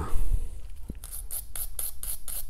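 Small wire bristle brush scrubbing the threads of a metal oil drain plug in quick back-and-forth strokes, about five or six a second, starting about a second in. A knock from handling the plug comes just after the start.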